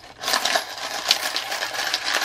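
Mixed coins (quarters, nickels, dimes and pennies) clattering and clinking in a stacked plastic coin-sorting tray as it is shaken to sift them down through the holes. A dense, continuous rattle starts about a quarter second in.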